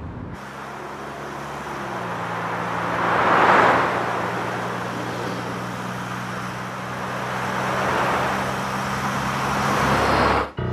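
Cars driving past on a road: a steady low engine hum under rushing engine and tyre noise that swells as cars pass, loudest about three and a half seconds in and again around eight seconds.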